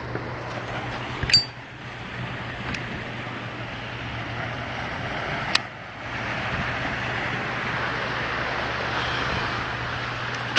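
City street ambience: a steady wash of traffic noise with a low hum, broken by a sharp click with a short metallic clink about a second in and another sharp click a little past the middle.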